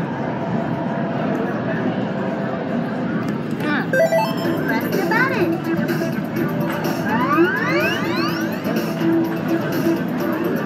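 Arcade ambience: electronic music and sound effects from the game machines over background chatter, with a brief chirp about four seconds in and a run of rising electronic sweeps in the second half.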